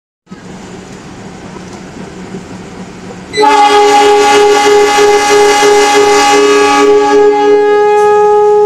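A quieter steady rumble, then a GE CC206 diesel-electric locomotive sounds its horn from about three and a half seconds in: one long, loud multi-note chord, held past the end.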